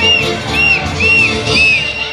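Argentine Litoral folk music in the chamamé family playing, with a high melody of short arching notes repeating about twice a second over a steady low accompaniment.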